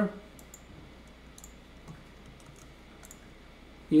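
A few faint, scattered clicks of a computer mouse at a desk, irregularly spaced over a quiet background.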